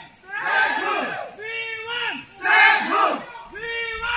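A crowd of marchers shouting slogans in a call-and-response rhythm. A single voice holds a call, then many voices answer together, about three times over.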